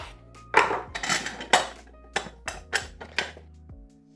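A knife knocks through a lime onto a cutting board, then a burst of loud squelching crackles and a run of sharp clacks as limes are pressed in a cast-metal hand juicer, over soft background music.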